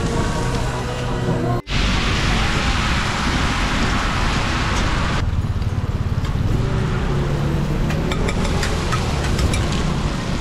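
Loud hissing sizzle of oyster omelette batter and eggs frying on a hot, oiled iron griddle, dropping back after a few seconds to a lower sizzle, with short sharp clicks of the metal spatula on the griddle near the end.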